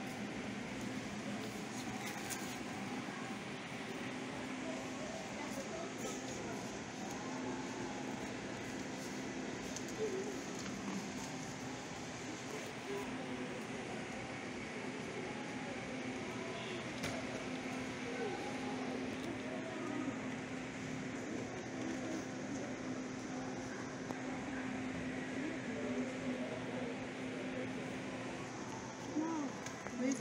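Indoor shop ambience: a steady low hum with distant, indistinct voices of other people.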